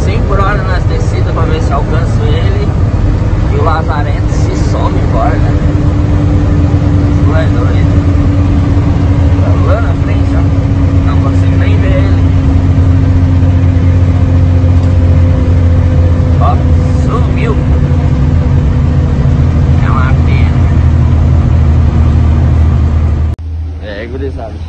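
Heavy truck's diesel engine and road noise heard inside the cab while cruising at highway speed: a loud, steady drone whose pitch sinks slowly over about twenty seconds. It cuts off abruptly about a second before the end.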